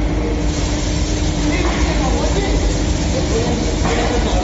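Steady low rumble of factory machinery, with faint voices in the background.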